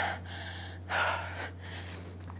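A woman breathing hard and fast from the exertion of low jacks, with a sharp breath about a second in.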